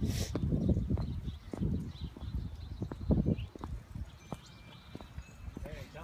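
Footsteps of a person walking over an asphalt driveway onto dry grass and soil: irregular scuffing thuds, about one or two a second.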